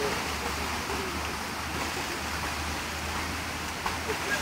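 Steady rush of water in a rock-lined pond with dogs wading in it, over a low steady rumble.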